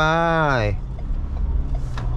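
Ford Everest's 2.0-litre single-turbo diesel at full throttle, heard from inside the cabin as a steady low drone with road noise while the SUV accelerates.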